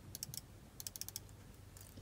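Faint clicks of a laptop keyboard as a search word is typed, in two or three short runs of key taps.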